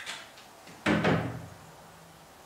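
A heavy wooden knock on an upright piano's cabinet about a second in, struck twice in quick succession, followed by a low ringing hum that fades over about a second. A lighter knock comes just before it.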